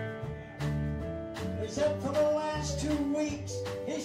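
Live country band playing: electric guitars over a stepping bass line and a steady drum beat, with bending guitar notes about two seconds in.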